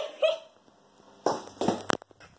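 A short, hiccup-like vocal sound, then rustling and a sharp click of a phone being handled and lowered.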